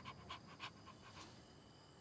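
A dog panting faintly: a quick run of short breaths that fades out after about a second and a half.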